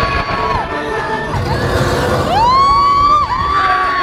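Riders on the Indiana Jones Adventure dark ride letting out long whoops, one rising sharply a little past halfway and held, over the rumble of the moving ride vehicle and the ride's music.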